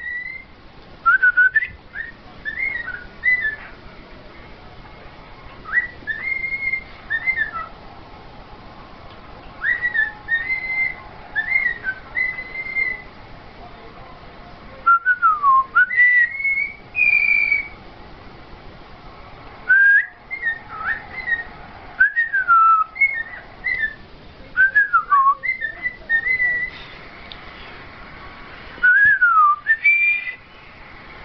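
Cockatiel whistling: short phrases of clear whistled notes that swoop up and down, repeated again and again with pauses of a second or two between them.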